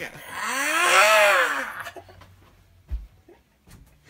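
A person's long, breathy vocal howl that rises and then falls in pitch, lasting under two seconds, followed by a soft thud near three seconds in.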